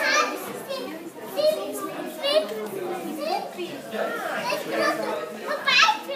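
Children's voices talking and calling out, overlapping, with a loud, high-pitched exclamation near the end.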